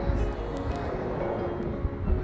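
Background music with slow, held notes, over a low rumble.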